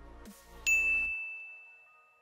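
A single bright 'ding' sound effect, a correct-answer chime, rings out just over half a second in and fades away slowly. It plays over the tail of an electronic music bed, which stops about a second in.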